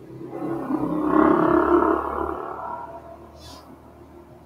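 A person's drawn-out wordless vocal sound close to the microphone, swelling for about a second and fading out about three seconds in.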